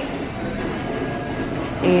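Steady rumbling background noise in a supermarket aisle, with a faint steady high tone running through it.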